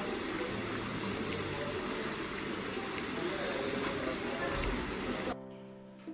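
Water from a row of fountain spouts pouring steadily into a koi pond, as a continuous splashing rush. It cuts off suddenly about five seconds in.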